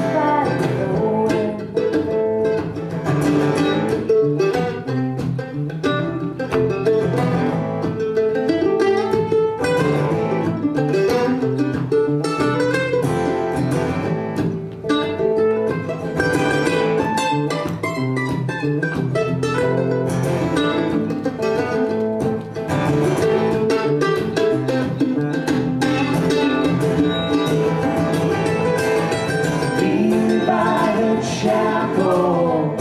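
Live acoustic band playing an instrumental break: a mandolin picks a lead line over acoustic guitar.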